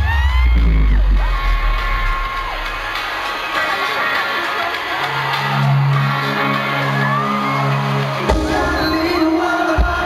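Concert crowd screaming and cheering, with high arching shrieks, over loud arena music: a deep bass swell at first, held low notes midway, and heavy bass hits near the end.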